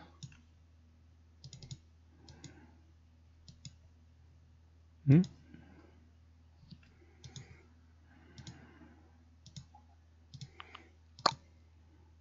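Quiet, scattered clicks of a computer mouse button, some single and some in quick pairs, spread through the whole stretch.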